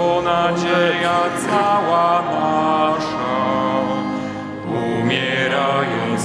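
Church hymn sung over sustained organ chords, with a brief breath between phrases shortly before the end.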